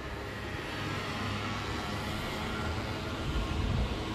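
Steady background hum of street traffic rising from the streets below, an even wash of noise with a low drone and no distinct events.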